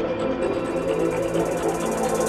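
Ambient breakcore electronic music: held synth tones with a rapid, regular high ticking that comes in about half a second in.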